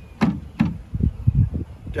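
Wooden hive frames knocking in a hive box as they are handled: two sharp clicks in the first half-second, then a quick run of low thumps.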